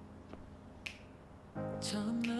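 Soft background pop song. A lull in the song with sparse finger snaps keeping the beat, then the sung vocal comes back in near the end.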